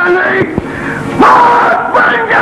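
A man's loud wordless yelling, a battle cry: short yells, then a louder, long-held shout that starts a little past a second in.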